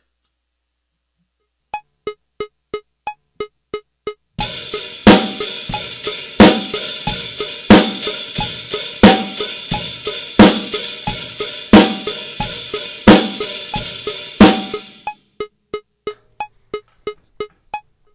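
A metronome clicking about three times a second, then a drum-kit groove played along with it. The cymbals wash steadily, with a loud accented hit about every second and a half. The bass drum is played weakly against the snare, so the snare covers the kick, an unbalanced drum mix. The groove stops suddenly and the metronome clicks on alone.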